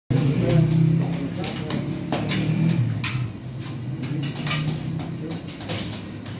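Voices talking in a small, echoing room, with a series of sharp knocks and clatters.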